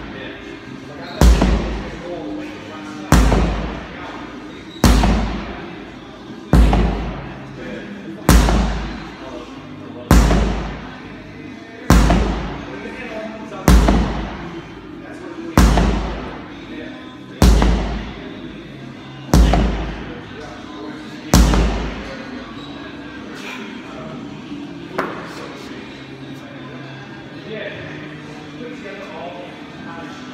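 Sledgehammer striking a stack of big rubber tyres: twelve heavy thuds, one about every two seconds, each with a short echo, stopping a little after two-thirds of the way through.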